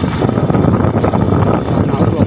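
Motorbike being ridden along a gravel road: a loud, steady rumble of engine, tyres and wind on the microphone.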